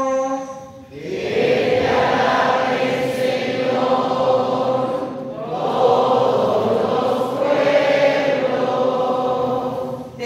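Many voices of a congregation singing the responsorial psalm refrain together in Spanish, in two phrases with a short dip about five seconds in.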